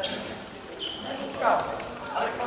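Players' voices calling out in an echoing sports hall during a futsal game, with a short high-pitched squeak a little under a second in and a louder shout around halfway through.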